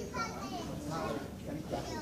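Children's voices chattering, overlapping speech from several young speakers.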